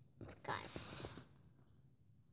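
A child whispering briefly and breathily, close to the microphone, for about a second near the start.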